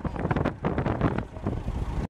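Farm tractor engine running as it tows a car out through a river, with wind buffeting the microphone in irregular gusts.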